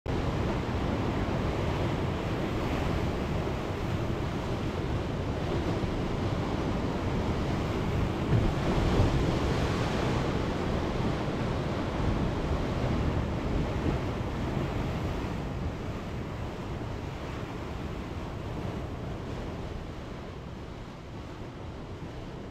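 Ocean surf washing steadily onto a beach. The wash swells about eight to ten seconds in, then slowly fades toward the end.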